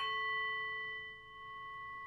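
Singing bowl struck once and left ringing: a chord of several steady tones that is loudest for about the first second, then eases and rings on.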